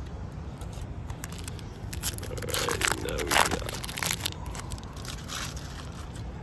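Foil wrapper of a trading-card pack being torn open and crinkled by hand: a run of crackling, tearing sounds, loudest around the middle.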